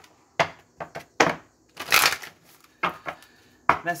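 A deck of cards being shuffled by hand: a string of brisk, irregular papery bursts, the longest and loudest about two seconds in.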